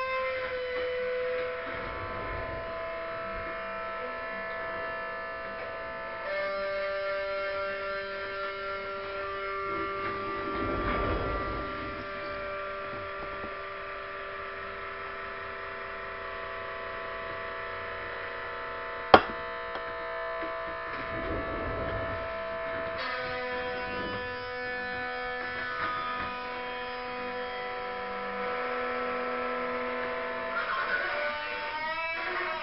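Sustained, steady musical drone of held chord tones that shift to new chords a few times, with a single sharp click about two-thirds of the way through.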